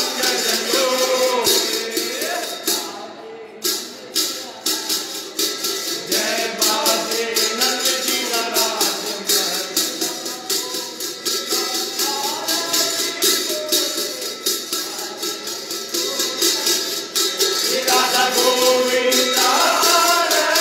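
Devotional singing in a temple, accompanied by a steady, fast jingling, rattling percussion of hand-held metal jingles or small cymbals; the music dips briefly about three seconds in.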